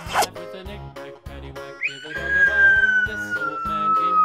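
Upbeat children's background music with a steady bass pattern, overlaid with cartoon sound effects: a brief wavering whoosh at the start, then from about two seconds in a long whistle-like tone sliding slowly downward.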